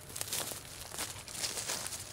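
Faint, irregular scratchy rustling as fly line is wound by hand back onto a wooden Cuban yoyo handline reel while walking across grass.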